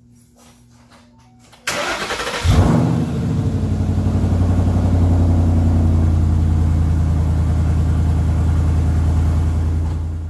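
Ford Mustang Boss 302's 5.0 L V8 cold-started: the starter cranks briefly a little under two seconds in, the engine catches with a quick rev, then settles into a steady idle through SLP Loudmouth axle-back exhaust. It is the first run after a radiator replacement, circulating coolant through the new radiator.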